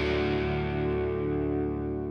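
Outro music: a held guitar chord ringing out, its high end gradually dying away.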